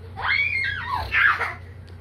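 A young child's high-pitched shrieks in rough play: a squeal that rises and falls over about half a second, then a shorter one about a second in.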